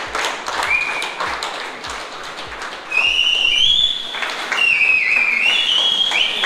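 A small group clapping, with a person whistling shrilly. A short whistle comes about a second in, and a long whistle from about three seconds in steps up and down in pitch and rises above the claps.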